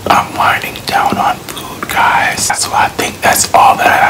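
A man whispering words in a steady run, with sharp hissing consonants.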